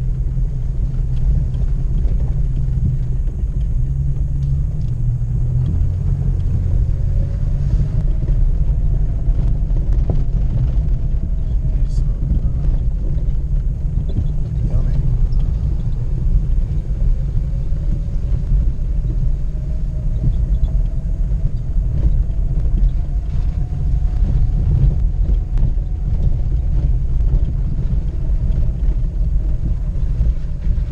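Jeep Grand Cherokee ZJ crawling up a rough dirt-and-gravel trail, heard inside the cabin: a steady low rumble of engine and tyres, with a faint whine that slowly rises and falls twice as the revs change. A few scattered knocks and rattles come from the rough ground.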